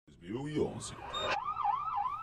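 A police-style siren sound effect, a fast warbling tone rising and falling about four times a second, comes in just under a second in after a brief lower sound at the start.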